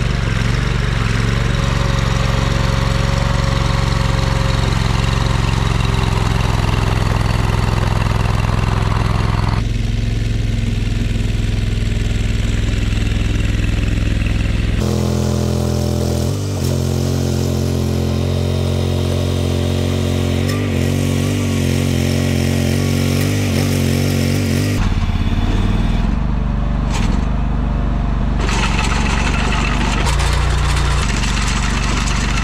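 Ditch Witch trencher's engine running steadily, its pitch wavering in the middle stretch as the machine is driven. The tone changes abruptly three times, about ten, fifteen and twenty-five seconds in.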